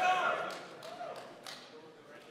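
The tail of a long, held shout fades out in the first moments. Then come a few light taps and knocks, echoing in a large hall, as a placard is put up on a display board.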